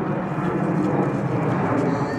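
A steady low rumbling noise, even throughout.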